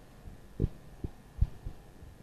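Four short, low thumps in quick, uneven succession, with no speech over them.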